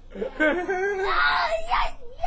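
Playful shouting of "No!" over and over, with laughter and one drawn-out high cry about a second in.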